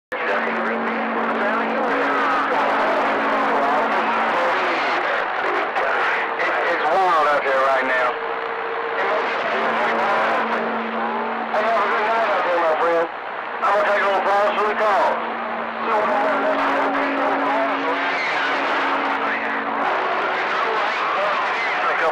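CB radio receiver on channel 28 carrying unintelligible voices through a hiss. Steady low tones come and go under the voices, and the signal dips briefly about thirteen seconds in.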